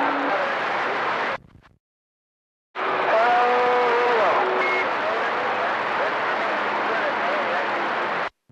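CB radio receiver on channel 28 picking up a long-distance skip transmission. A weak, garbled voice sits buried in heavy static. The squelch closes to dead silence for about a second and a half, then another carrier opens with a faint, unintelligible voice under the same steady hiss.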